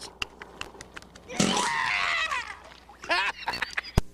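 High-pitched, squawky helium-style voice sounds from a puppet character: a long rough squawking shriek about a second and a half in, then a shorter rising squeal near the end. A sharp click comes right at the very end where the tape cuts off.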